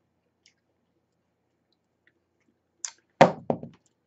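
Near silence for nearly three seconds, then a short hiss and a woman starting to speak.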